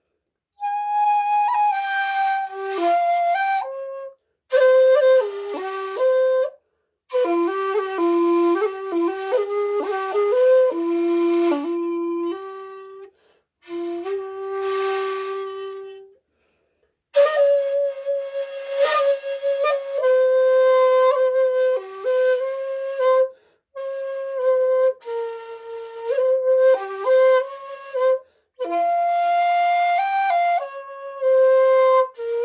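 Bamboo 1.8 shakuhachi played solo in a slow traditional style: held notes that slide between pitches, in phrases of a few seconds broken by short breath pauses. One note a little past the middle is breathier and windier than the rest.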